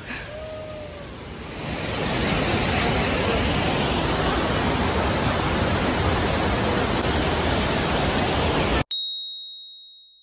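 Steady rushing noise of a three-tiered waterfall, building up in the first two seconds and then holding loud and even. It cuts off abruptly near the end, and a single high chime follows, ringing and fading away.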